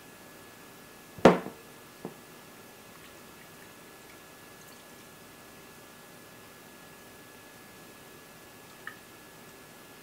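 Flannel wipes being dropped and pressed into cleaning solution in a large glass jar, with faint wet handling sounds. A single sharp knock about a second in and a lighter click just after, from handling the jar. A faint steady high-pitched hum runs underneath.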